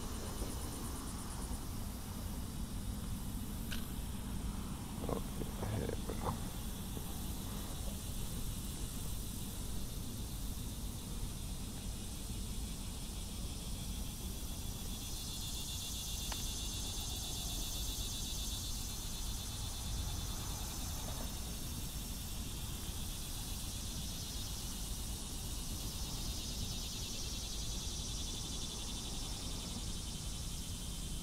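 Insects buzzing in a high, shrill chorus that grows louder about halfway through, over a steady low rumble.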